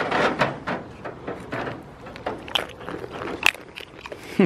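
Young goat nibbling and mouthing close to the microphone: a run of irregular clicks and rustles, with two sharper clicks near the end.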